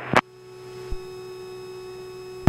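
Steady electronic tone in the cockpit radio and intercom audio between two transmissions, starting with a sharp click just after the start. A short low thump comes about a second in.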